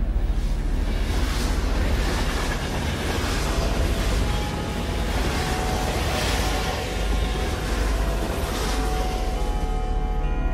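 Wind buffeting an outdoor microphone: a loud rushing noise with a deep rumble that swells several times. Soft, held music notes come in about halfway through.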